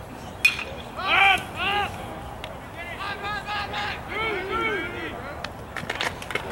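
A pitched baseball arrives at home plate with one sharp smack about half a second in, then voices call out in drawn-out shouts that rise and fall in pitch.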